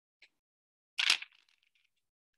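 Plastic ball-and-stick molecular model pieces clicking together: a faint tick, then one sharp click about a second in as a hydrogen ball on its bond stick is pushed into the carbon ball, followed by a few small ticks.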